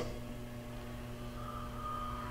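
Quiet room tone with a steady low electrical hum and a faint thin whine near the end.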